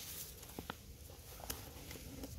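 Footsteps through dry leaf litter and twigs on a forest floor: faint rustling with a few short sharp clicks.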